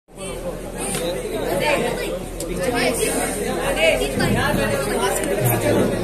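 Several men talking at once, an indistinct chatter of voices in a large, echoing space. A steady low hum or drone comes in near the end.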